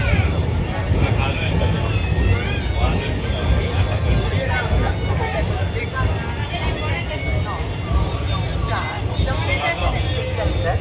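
Indian passenger train coach rolling slowly along a station platform, heard from its open doorway: a steady low rumble, with platform voices and scattered short high chirps over it.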